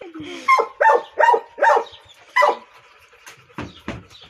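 A dog giving about five short, high yips in quick succession, each falling in pitch, in the first two and a half seconds.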